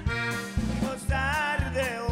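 Live norteño band playing an instrumental passage: an accordion melody with a wavering pitch over electric bass and drums keeping a steady beat.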